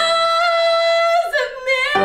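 A woman singing a musical theatre song solo: she holds a long high note for about a second, then slides down and starts a new phrase. The accompaniment drops out under the held note and comes back in right at the end.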